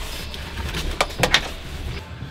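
Three quick clicks a little over a second in, from a racing harness being handled in a race-car cockpit, over a low steady room rumble.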